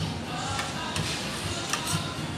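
Restaurant background music playing over the room, with a couple of light clicks of a fork against a plate, about half a second in and near the end.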